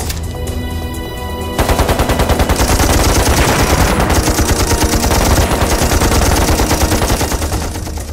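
Sustained low music tones over a rumble, then heavy, rapid automatic gunfire breaks in about a second and a half in and keeps up as a dense, continuous rattle of shots.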